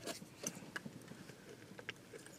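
Faint handling sounds of a lidded paper coffee cup being picked up and raised to drink: a few small, sharp clicks and rustles.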